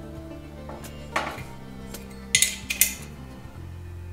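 Light metallic clinks of a steel mounting plate and a washing-machine shock absorber being handled and fitted together: one clink about a second in, then a quick cluster of sharper clinks around the middle.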